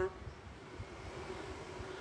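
A pause in speech holding only faint background noise: a low, steady rumble with light hiss.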